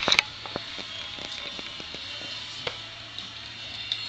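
Light clicks and taps of small plastic toys being handled, with a sharp clack at the start, over faint background music.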